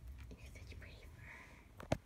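A person whispering softly, then a single sharp knock near the end.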